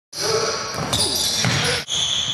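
Sounds of a basketball game in play on a gym court: high, drawn-out squeaks of sneakers on the floor over players' voices.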